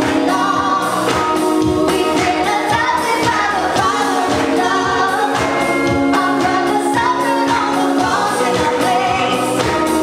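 Four women singing a gospel worship song in harmony into microphones, over music with a steady beat.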